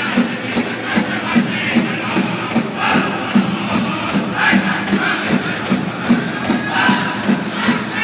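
Powwow drum group singing a grand entry song, several voices over a big drum struck in unison at a steady beat about two and a half times a second, with crowd noise around it.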